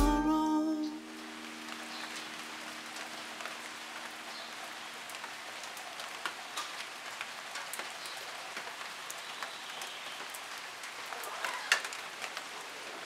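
Steady rain falling on a garden, with scattered drops ticking. A held music chord fades out in the first second.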